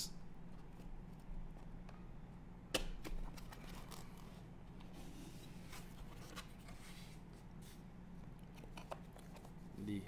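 A cardboard amplifier box being opened by hand: a sharp snap of the cardboard about three seconds in, then light scuffing and rustling of the lid and foam packing, over a steady low hum.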